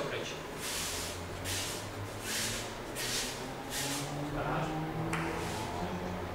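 Bare feet sliding on judo mats in a run of short swishes, roughly one every three quarters of a second, with faint voices in the hall.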